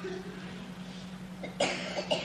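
A short cough about one and a half seconds in, over a steady low hum in the recording.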